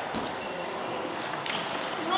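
Table tennis ball hits during a rally: a few sharp clicks of the ball off bat and table, the clearest about a second and a half in.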